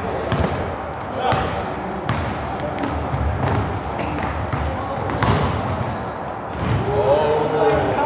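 Basketball bounced on a hardwood gym floor during play, sharp repeated thuds echoing in a large hall, over a background of players' voices, with a brief high squeak about half a second in.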